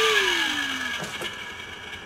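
Water rushing through the plumbing and flow meter, starting suddenly with a hiss and a whine that falls in pitch over about a second. Two light clicks follow about a second in.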